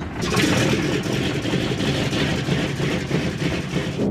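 B-29 bomber's Wright R-3350 radial piston engine starting up and running, its noise jumping in level about a third of a second in and holding steady.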